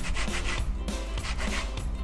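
Orange peel scraped back and forth over a perforated stainless-steel hand grater in repeated rasping strokes, zesting the orange.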